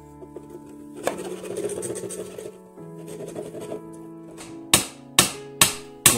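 Background music with sustained notes. Near the end, three sharp hammer blows, a hammer driving nails into a wooden board, louder than the music.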